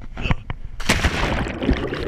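Jump from a rock ledge into a lake heard from a chest-mounted camera: a few sharp scuffs and knocks of the push-off off the rock, then from about a second in a loud, continuous rush of splash and bubbling as the camera plunges into the water.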